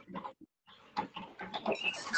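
Faint, halting vocal sounds heard over an online video call, with a short near-silent gap about halfway.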